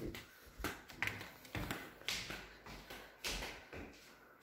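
Footsteps on a hard floor: a string of short taps about every half second as someone walks through rooms.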